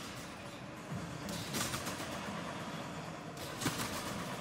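Trampoline bed and springs struck twice, about two seconds apart, as a gymnast lands and rebounds high in a routine, over steady arena background noise.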